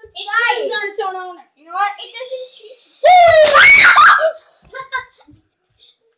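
Children's voices making wordless calls and laughter, then a loud, high scream about three seconds in that lasts over a second.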